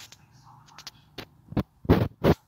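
A run of four short, sharp knocks or bumps in the second half, coming faster and louder, with the last two loudest.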